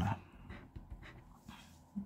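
Faint scraping of a scratch-off lottery ticket's silver coating being rubbed off with a scraper, in a few soft strokes.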